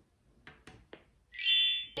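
A few light plastic clicks, then a loud, steady, high electronic beep of about half a second from a VTech Kidisecrets jewellery box.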